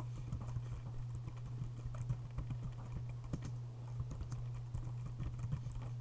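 Typing on a computer keyboard: a continuous run of quick, irregular key clicks over a steady low hum.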